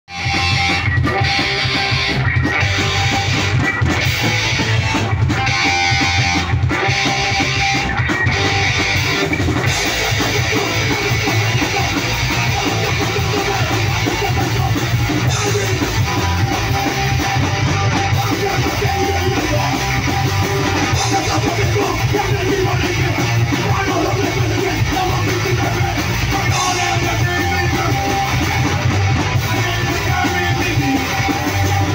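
Live punk band of distorted electric guitars, bass guitar and drum kit playing an instrumental passage. The first ten seconds are stop-start hits with short gaps about every second and a half, after which the band plays without a break.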